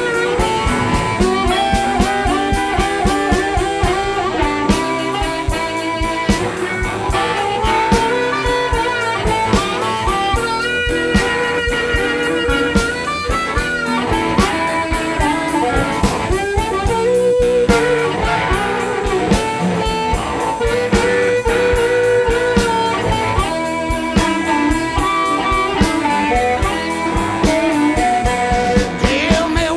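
Electric blues band playing an instrumental passage: an electric guitar lead with bending notes over a steady drum kit and bass.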